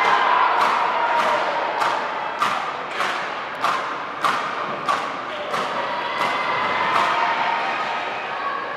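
A steady rhythm of sharp knocks, about eleven strikes a little over half a second apart, over crowd noise from spectators in an ice rink.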